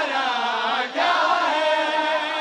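A group of men chanting a mourning lament (nauha) together, with a short break between phrases about a second in.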